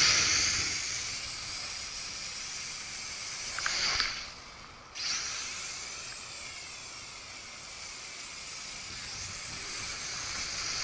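Small RC quadcopter's motors and propellers whining in flight, the pitch rising and falling as the throttle changes, over a low wind rumble. About four seconds in the whine swells, then falls away for about a second and comes back suddenly.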